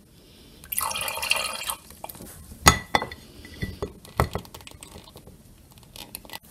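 Water splashing and dripping from a plastic dropper into a glass tumbler for about a second, then a sharp clink against the glass and a few lighter taps.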